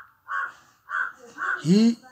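A bird calling: three short, harsh calls, with a man's voice coming in briefly near the end.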